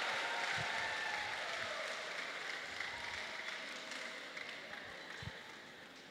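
Audience applauding, the clapping dying away steadily until it is faint near the end.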